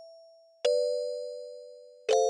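A 17-key kalimba being played. One plucked tine rings and fades, then about two-thirds of a second in two tines are plucked together and ring on as a two-note chord, slowly dying away.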